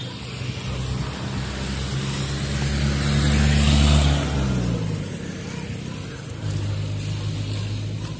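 A motor vehicle passing by: its engine grows louder up to about four seconds in, then drops in pitch and fades as it moves away. Another steady engine hum starts near the end.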